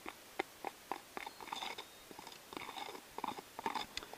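Small metal spoon stirring damp seed inoculant in a clear plastic container: irregular small clicks and crunchy scrapes of the spoon against the plastic.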